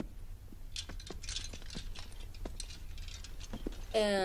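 Scattered light taps, clicks and rustling as people move about a carpeted room: someone getting up off the floor, and footsteps.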